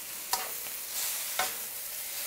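Egg noodles and vegetables sizzling in a hot wok as they are tossed and stirred, with the spatula knocking against the wok twice, about a third of a second in and again about a second and a half in.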